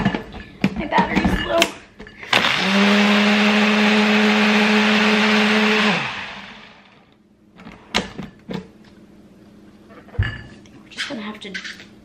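A countertop blender motor starts about two seconds in and runs steadily for about three and a half seconds, blending a smoothie with added ice, then winds down. A few knocks and clatter come before it, and a couple of thumps come after.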